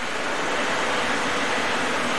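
Steady rushing noise with no distinct events.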